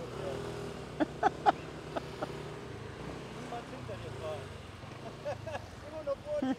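Scooter engines running as the riders pull away from a stop, the engine note shifting in pitch partway through. A few brief voice sounds come about a second in.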